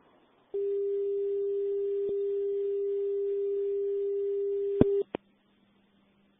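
Steady telephone line tone after the caller has hung up, marking the dropped call. It starts about half a second in, holds for about four and a half seconds and cuts off with two sharp clicks, the first of them the loudest sound.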